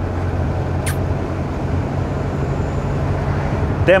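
Truck's diesel engine droning steadily at cruise, with tyre and road noise, heard from inside the moving cab.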